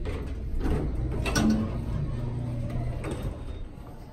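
Dover elevator car doors opening: the door operator runs with a low rumble and several mechanical clunks.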